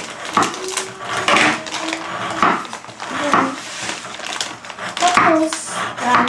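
Kitchen knife chopping on a wooden cutting board, irregular knocks, with quiet talk underneath.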